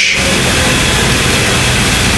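A loud burst of static-like hiss, about two seconds long, that cuts in and out abruptly in place of the speech.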